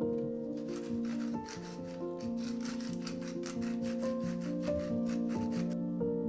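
Soft instrumental background music, over which hands rub and shift raw zucchini strips on a wooden cutting board in a run of short rubbing strokes.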